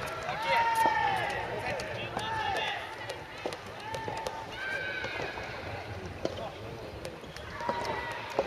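Drawn-out shouted calls from soft tennis players, several of them rising and falling in pitch, with a few faint knocks.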